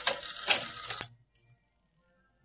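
Pioneer PD-F908 101-disc CD changer's loading mechanism moving a disc out of the player: a high motor whine with sharp clicks, which cuts off suddenly about a second in, leaving near silence.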